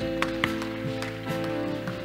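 Church praise band playing softly, with steady sustained keyboard chords.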